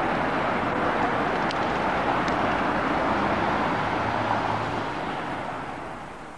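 Steady street noise of traffic on a wet road below, a continuous hiss and rumble that fades near the end.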